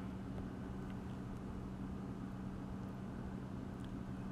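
Steady low background hum and rumble, with a faint hiss above it.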